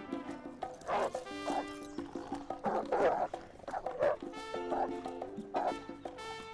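A dog barking repeatedly, seven or so harsh barks, the loudest in the middle, over background music with held horn-like notes.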